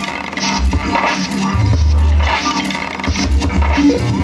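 Electronic hip hop beat played live, with long deep bass notes that come and go under repeated sharp, bright hits.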